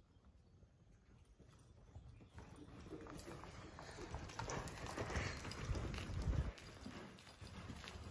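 A horse's hoofbeats at a lope on soft arena dirt. They start faint, grow loudest about five to six seconds in as the horse passes close, then ease off.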